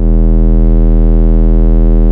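Electronic music: a sustained synthesizer chord over a deep bass note, held steady with the drums dropped out.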